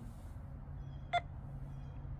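One short electronic beep about a second in, typical of a phone app's scanner confirming that it has read a lottery ticket's code, over a low steady hum.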